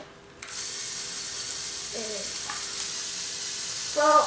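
Battery-powered electric motor in a Lego Technic logging truck replica switched on about half a second in, then whirring steadily through its plastic gears as it drives the crane round.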